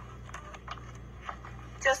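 A few faint knocks and scuffs as someone clambers into a low opening among loose rocks, over a steady low hum; a woman's voice comes in at the very end.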